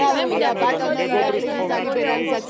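Speech only: people talking, with voices overlapping one another.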